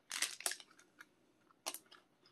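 Someone biting into and chewing a soft, very chewy protein bar held in its wrapper. Faint crinkles and wet mouth clicks come in two short clusters, one just after the start and one near the end.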